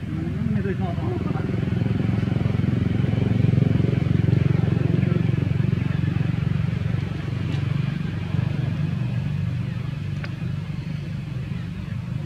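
A steady low motor rumble that swells about four seconds in and slowly eases off.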